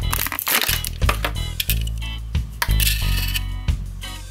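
Background music with a steady bass line, over the crinkling and crackling of plastic and foam packaging as a die-cast model car is lifted out of its tray, loudest near the start and again in the second half.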